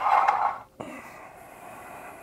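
A short, loud puff of breath, then from about a second in a faint steady whir: the Afidus ATL-200's optical zoom lens motor driving as the lens zooms out.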